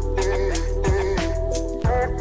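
Background music with a steady beat: deep drum hits about twice a second under held melodic notes and a continuous bass line.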